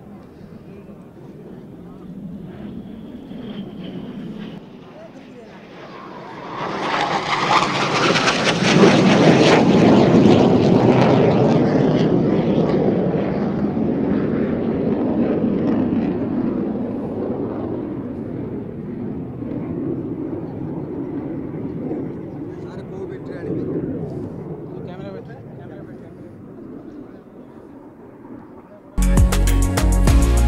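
Surya Kiran team's BAE Hawk jet trainers flying past in formation: jet engine noise swells sharply about a quarter of the way in, is loudest for a few seconds, then fades slowly as the formation moves away.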